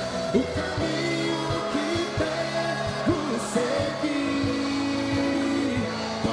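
Congregational worship music: a voice singing long, gliding held notes over sustained instrumental chords.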